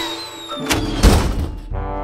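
Cartoon sound effects: a falling whistle tails off, then two heavy thunks about a second in, the second the louder. Music with a held note comes in near the end.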